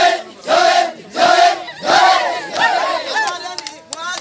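A group of young men shouting an Oromo dance chant in unison, one loud syllable about every half second. About halfway through the rhythm breaks into looser overlapping shouts and calls, with a few sharp clicks near the end.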